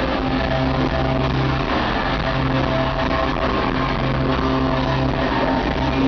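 Live rock band playing amplified electric guitars, bass and drums through a hall's PA, loud and steady with held chords, heard from within the crowd; a sung line ends at the start.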